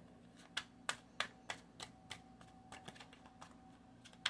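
A tarot card deck being shuffled by hand: soft, irregular clicks of the cards, about three a second, fainter after the first two seconds.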